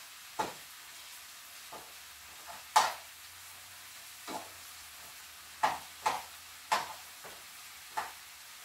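Beef stir fry sizzling in a frying pan, with a utensil scraping and knocking against the pan about eight times as it is stirred; the sharpest knock comes near three seconds in.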